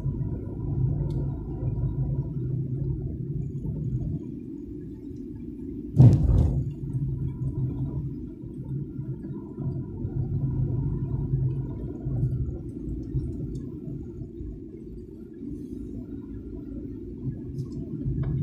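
Car engine and road noise heard from inside the cabin while driving slowly in traffic: a steady low drone. A single sharp thump about six seconds in is the loudest sound.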